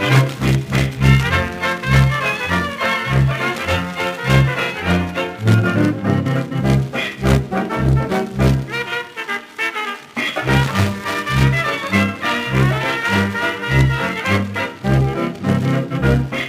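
A 1920s dance band playing an instrumental stretch of a fox trot from an electrically recorded Victor 78 rpm disc, over a steady beat. The bass drops out briefly about nine seconds in.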